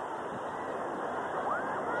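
Steady crowd noise from a full arena, an even wash of sound without distinct voices, with a faint voice rising near the end.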